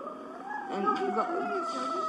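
A toddler whining for her bottle in one long, high, slightly wavering cry lasting about two seconds.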